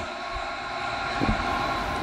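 A steady hiss with a faint hum, slowly growing a little louder, with a soft low knock or two.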